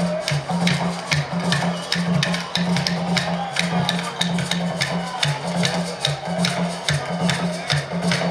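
Live Jerusarema music: tall hand drums play a steady pattern of deep strokes alternating between two pitches, under a quick run of sharp, dry strikes several times a second.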